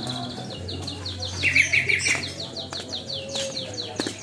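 Small birds chirping in a rapid run of short downward chirps, about five a second, with a louder burst of chirping about one and a half seconds in, over the low steady hum of a traditional market.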